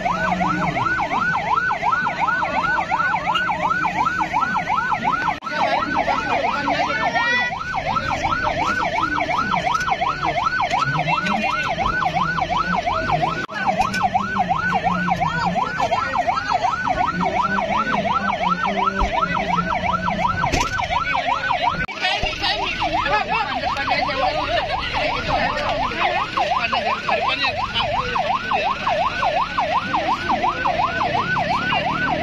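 Ambulance siren on a fast yelp, its pitch sweeping up and down a few times a second without let-up.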